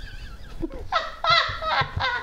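A woman laughing in a high, wavering voice, breaking into a louder run of laughter about a second in.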